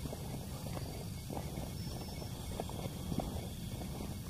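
Faint footsteps on a concrete walkway, a few soft irregular ticks over a low steady outdoor background.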